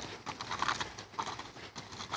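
Horse's hooves walking on gravel, a gritty crunching step every half second or so.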